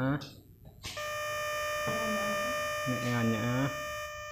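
A steady electronic tone, several pitches held together like a chord, starting abruptly about a second in, with a voice talking over it.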